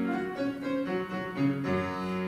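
Classical piano music: a run of short melody notes, then a low note held near the end.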